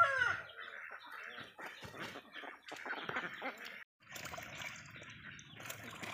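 The end of a rooster's crow, falling in pitch and cutting off in the first half-second; then faint chicken clucking and scattered splashing as a Muscovy duck bathes in shallow water, with a brief drop to silence just before the middle.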